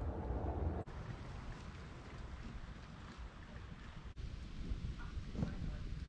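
Wind rumbling on the microphone outdoors: a low, fairly quiet rumble that breaks off sharply about a second in and again about four seconds in.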